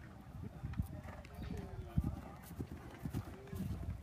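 Irish Sport Horse cantering on grass, its hooves striking the turf in dull, irregular thuds, one louder thud about halfway through.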